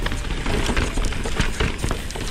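Downhill mountain bike rolling fast over a rough dirt and rock trail: tyres on the ground and the bike rattling over bumps, with many irregular clicks and knocks over a steady low rumble of wind on the camera mic.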